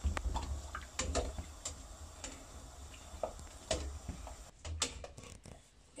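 Scattered light clicks and taps of a spoon against a stainless steel pot as zucchini are moved about in hot water, at irregular intervals.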